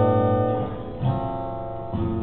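Acoustic guitar playing chords in a small room, each chord left ringing and fading, with a new chord played about a second in.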